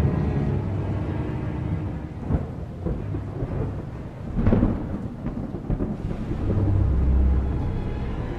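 Thunder sound effect: a long low rumble broken by two sharp cracks, about two and a half and four and a half seconds in, and swelling again near the end.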